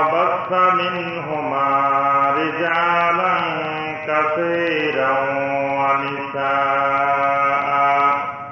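A solo voice chanting in long, drawn-out notes that glide slowly in pitch. It comes in three phrases, with short breaks about four and six seconds in.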